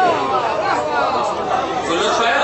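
Speech: a man's voice addressing a gathering through a microphone.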